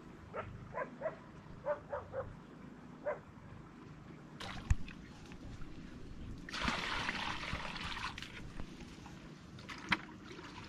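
A dog barks faintly several times in quick succession during the first three seconds. A sharp knock follows, then water pours and splashes from a plastic bucket for about a second and a half.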